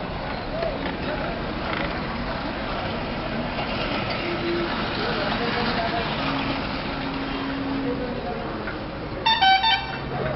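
Street traffic noise with indistinct voices in the background, then near the end a vehicle horn sounds two quick loud toots.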